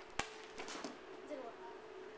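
A single sharp metallic click about a quarter second in, with a brief high ring after it: a launched quarter coin striking the playground pavement.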